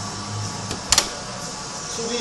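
A faint click, then a sharper double click about a second in, over a steady low hum.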